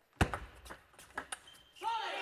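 Table tennis ball struck by rackets and bouncing on the table in a fast rally. A sharp crack comes about a quarter second in, then a quick, uneven run of lighter ticks that stops as the point ends.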